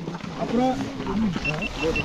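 Several people's voices in a close group, talking over one another. About one and a half seconds in comes a quick run of about eight short, high beeps.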